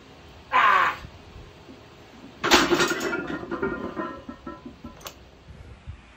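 A lifter's short, harsh shout falling in pitch, then about two seconds later a 361-pound barbell loaded with iron plates comes down with a loud clang, the plates ringing and rattling for over a second, and a light clink near the end.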